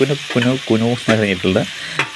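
Shallots and green chillies sizzling steadily as they fry in hot oil in a steel pan, under a person's speaking voice.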